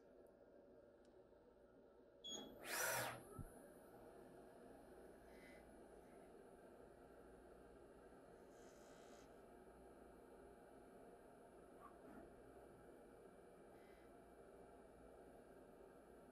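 TRAK 2op small CNC vertical mill starting its program: a brief louder burst of machine noise about two seconds in, then the spindle runs with a faint, steady hum as the end mill cuts a flat on a round part held in a Hardinge indexer.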